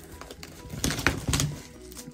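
Card-game packaging being handled on a tabletop: a few light clicks and knocks about a second in.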